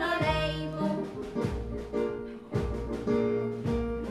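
Live band accompaniment to a musical-theatre song, with a bass line on a steady beat of about two notes a second; singing voices are heard briefly at the start.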